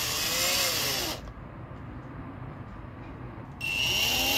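Electric drill on its lowest speed running a 3/64-inch bit through a soft brass gas-stove orifice. The motor whine drops in pitch and dies away about a second in, then spins back up to a steady whine near the end.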